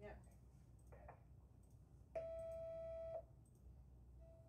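Video intercom giving one steady electronic beep lasting about a second, about two seconds in, as the door lock is released from the phone app.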